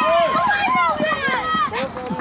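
Several high-pitched young voices shouting and calling out excitedly at once, with long drawn-out calls that rise and fall, tailing off towards the end.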